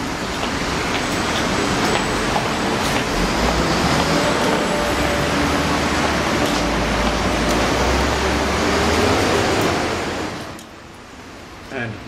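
Loud, steady city traffic noise: a wash of engine and road sound with a deep rumble from heavy vehicles, strongest in the middle, that drops away suddenly about ten and a half seconds in.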